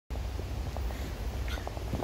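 Low, uneven rumble of handling noise on a hand-held phone's microphone as the phone is moved about, with a few light clicks in the second half.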